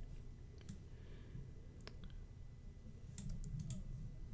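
Clicks of a computer mouse and keyboard: a few single clicks, then a quick cluster of them near the end, over a low steady hum.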